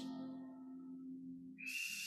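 A soft sustained electronic keyboard chord fading away under the prayer, then a short hiss with a thin, high whistle-like tone near the end.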